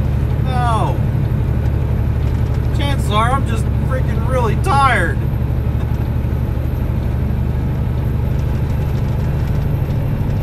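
Steady low drone of a heavy truck's engine and road noise, heard inside the cab while driving at speed.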